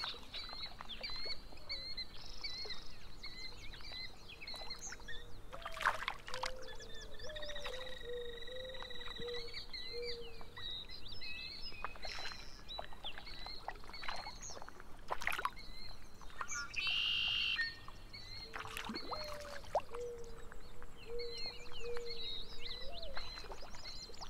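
Several wild birds singing and calling together: high, repeated chirps and trills throughout, two runs of lower, short, evenly spaced notes, and a brief harsh buzzing call about two-thirds of the way through.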